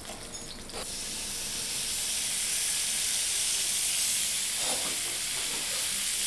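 Strips of raw veal dropped into hot oil in a frying pan, searing with a steady sizzle that starts about a second in and holds.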